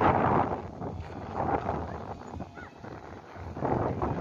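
Gusty wind buffeting the microphone, swelling and fading, strongest at the start and again near the end.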